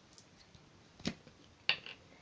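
Two sharp plastic clicks, one about a second in and a louder one with a small follow-up near the end: a glue stick's cap pulled off and set down on a tabletop.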